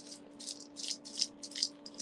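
Small plastic craft beads and charms rattling as they are handled, in a run of short, light rattling bursts about three a second.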